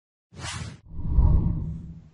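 Intro logo sound effect: a short, airy whoosh, then a deeper whoosh that swells about a second in and fades away.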